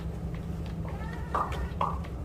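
Quiet room tone with a low steady hum, broken by two short high squeaks in the second half.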